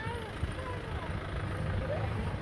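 Faint voices of people talking at a distance over a steady low rumble.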